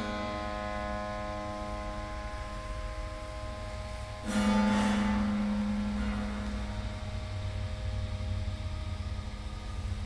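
Strings of a dismantled piano ringing out: a note struck just before the start fades slowly with many overtones, and a louder note at the same low pitch is struck about four seconds in and rings on for several seconds. A steady low rumble runs underneath.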